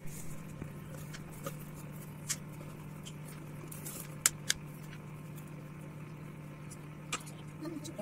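A steady low hum, with scattered light clicks and taps as a plastic bottle and a candle on a steel plate are handled on a kitchen countertop.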